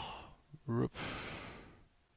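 A man's short voiced murmur followed by a breathy sigh that fades out.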